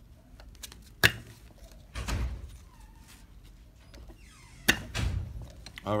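Hand-lever snap press with a 3 mm die cutter punching holes through webbing: two strokes, each a sharp click with a dull thunk, about a second in and again near the end.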